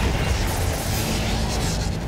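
Cartoon attack sound effect: a loud, steady rush of blast-like noise with deep rumble, laid over background music.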